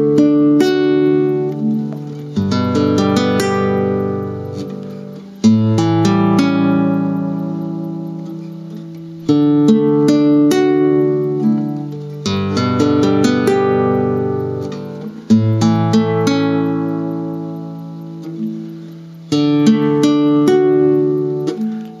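Nylon-string classical guitar played slowly: simple chord shapes, each picked string by string from the D string upward and left to ring out. A new chord starts every three to four seconds, about six times in all, as the fretting fingers are moved bit by bit toward a full G major chord.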